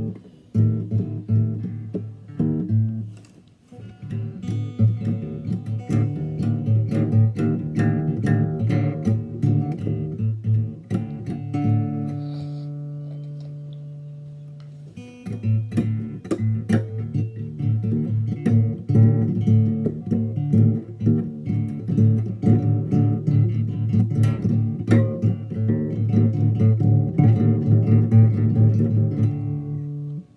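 Acoustic guitar played with quick runs of plucked notes. The playing breaks off briefly about three and a half seconds in. A note is left ringing and fading from about twelve to fifteen seconds in, and then the fast picking starts again.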